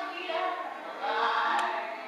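Choral music: voices singing held notes that change pitch every half second or so.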